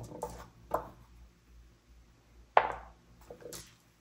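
A four-sided game die rolled onto a table: a few light knocks, then one sharp clack about two and a half seconds in, with a few small clicks after it.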